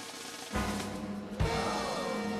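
Soundtrack music with two heavy bass-drum hits, one about half a second in and another near one and a half seconds, followed by a held note.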